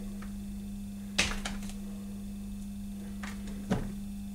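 A hand tool being picked up and handled on a workbench: one sharp click about a second in and a softer knock near the end, over a steady low hum.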